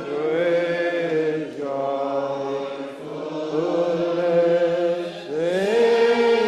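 A church congregation singing a metrical psalm unaccompanied, in slow, long-held notes that slide from one pitch to the next.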